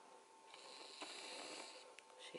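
Faint breathy hiss, like a person breathing out, starting about half a second in and lasting just over a second, over quiet room tone with a faint steady hum.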